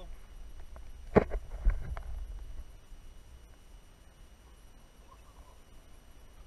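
Handling noise on an action camera: a sharp knock about a second in and a second knock half a second later, over a short low rumble, then faint background noise.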